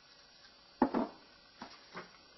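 Knocks and clicks of PVC pipe and fittings being handled on a workbench: a sharp double knock a little under a second in, then two softer clicks near the end.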